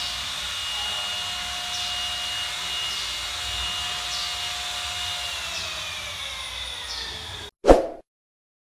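A small electric motor runs with a steady whine and hiss, then its pitch begins to fall a little after five seconds in, as if it is winding down. Near the end the sound cuts out and a short, loud burst follows.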